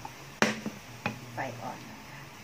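Spatula stirring chopped garlic frying in oil in a nonstick pan, with one sharp click about half a second in and a smaller one just after.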